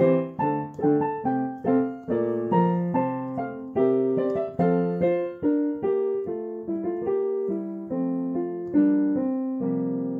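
Portable electronic keyboard played with a piano voice, improvising on a hymn tune in full chords. Each struck chord fades away; the chords come about twice a second, then slow, with a long held chord about nine seconds in.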